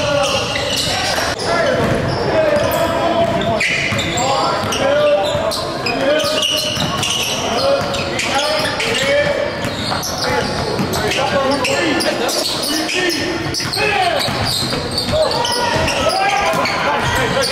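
Live basketball game audio in a gym: a ball bouncing on the hardwood court amid indistinct shouts and chatter from players and spectators, echoing in the large hall.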